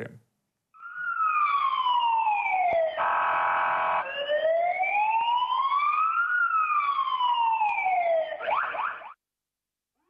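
Police patrol car siren in a slow wail, its pitch falling and rising over two to three seconds each way. It is broken once by a steady, buzzy horn tone lasting about a second, and it ends in a few quick yelps before cutting off.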